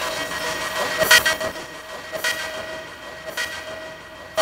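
Experimental improvisation: a piezo-miked box of glass and guitar strings struck about once a second, each hit a bright clattering ring, over steady held synth tones run through a delay pedal.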